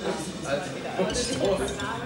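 Drinking glasses clinking a little past the middle, over background talk.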